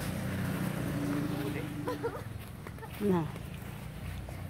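A low, steady engine-like hum of a vehicle through the first half. About three seconds in comes a short voice sound that slides down in pitch, the loudest thing here, with a few brief vocal sounds just before it.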